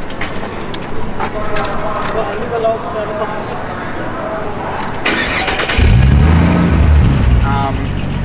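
High-powered six-cylinder car engine starting: a short crank about five seconds in, then it catches with a loud rise and fall in revs and settles into a steady idle near the end.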